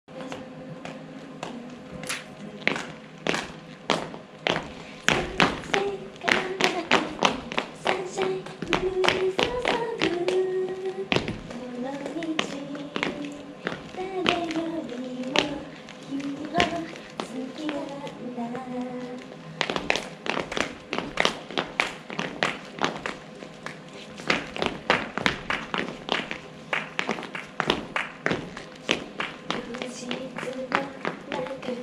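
Dancers' black ankle boots stamping and tapping on a wooden stage floor in a quick, uneven run of sharp footfalls, thinning out in the middle stretch. A woman's singing voice carries a melody over the steps, clearest in the middle.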